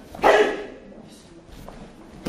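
A single short, loud shout (kiai) from a martial artist performing a form, starting about a quarter second in and dying away quickly.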